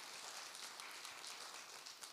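Audience clapping, thinning out near the end.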